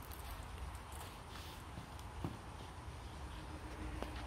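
Quiet outdoor ambience: a low steady rumble with a few faint light taps.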